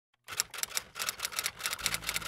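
Computer keyboard being typed on: a quick, irregular run of key clicks, several a second.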